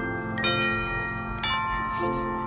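Marching band playing sustained chords, with bell-like strikes from the front ensemble's mallet percussion; a new chord is struck about half a second in and again about a second and a half in.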